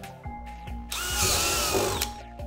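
Power drill boring a hole through the wall of a plastic drum, the motor whine and the bit cutting into the plastic, loudest for about a second in the second half.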